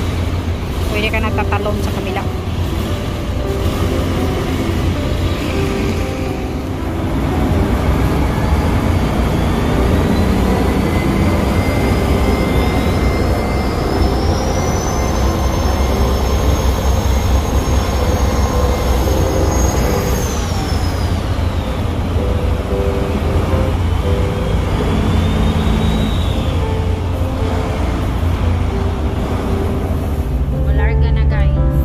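Deep, steady rumble of ferry diesel engines, with a thin high whine that rises slowly, holds, and drops away about two-thirds of the way through.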